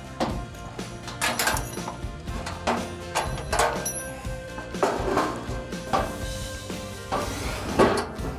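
Background music over several metallic clinks and knocks, some with a short ring, as hinge pins are worked out and a steel cabinet door is lifted off.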